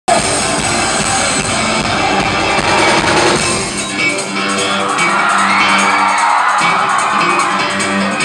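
Live rock music played loud: a full band with drums for the first half, then about four seconds in the deep bass drops away, leaving held guitar notes ringing on.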